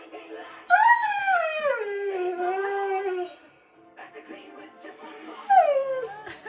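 Husky-malamute mix howling: one long call that swoops up, slides down and holds for about two and a half seconds, then a short falling "wah" near the end.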